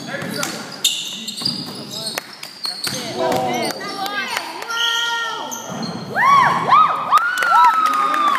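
A basketball bouncing on an indoor court and basketball shoes squeaking on the hall floor as players cut and scramble, with a flurry of the loudest, sharp rising-and-falling squeaks near the end.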